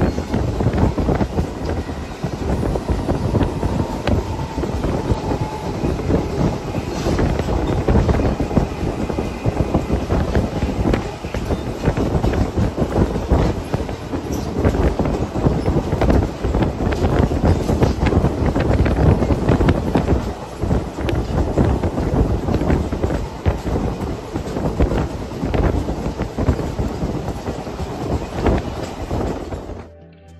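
Passenger train running along the track, heard from on board: a steady rumble of wheels on rail with many small irregular knocks and rattles.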